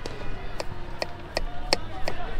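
Kitchen knife chopping cucumber on a wooden cutting board: sharp, regular strokes about two to three a second.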